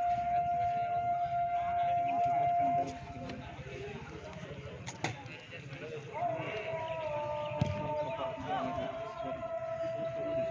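A long, steady siren-like tone held on one pitch, breaking off about three seconds in and coming back about six seconds in, with a slight dip in pitch, over the talk of spectators.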